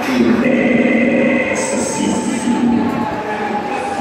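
Fairground thrill ride running, its machinery giving a steady mechanical whine with one tone slowly falling in pitch. A brief high hiss comes about halfway through.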